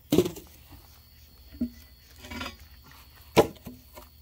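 Chunks of wood and bark being lifted off a metal pit ring and dropped aside. There are two loud thuds, one at the start and one about three and a half seconds in, with a softer knock and a brief scrape between them.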